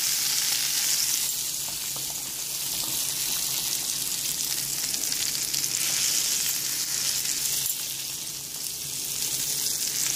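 Blanched green beans sizzling in hot oil with garlic in a grill pan: a steady, high frying hiss that dips slightly near the end.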